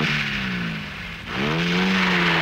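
Small car's four-cylinder petrol engine pulling away. The engine note sinks slowly, drops away about a second in, then climbs again and holds steady, as with a gear change under acceleration.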